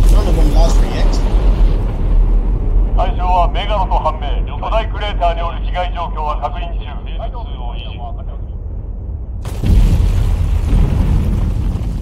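Kaiju film soundtrack: a deep rumbling boom opens, over a steady low rumble. From about three to eight seconds in, a voice gives a Japanese military-style report, thin and cut off at the top as over a radio. A second heavy rumbling boom comes in near the end.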